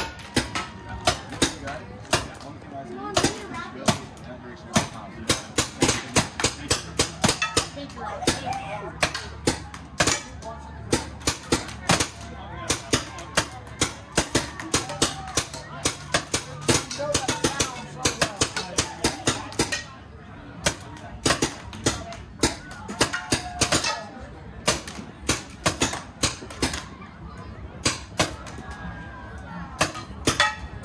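Paintball markers firing: a long run of sharp pops, often several a second and unevenly spaced, with a brief lull about twenty seconds in.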